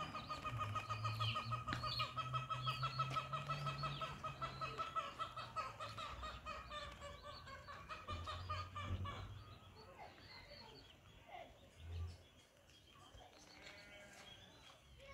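Birds calling in a fast, steady trill for the first nine seconds or so, then fading to fainter scattered calls.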